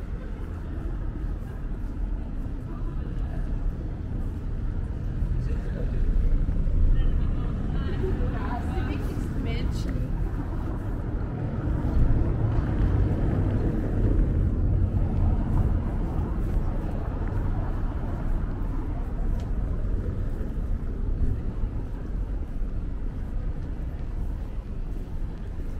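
Street ambience: a steady low rumble of town traffic, with passers-by talking indistinctly and a few light clicks.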